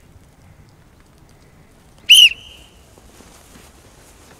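A single short, high-pitched blast on a sports whistle about halfway through, from a coach leading a group exercise session.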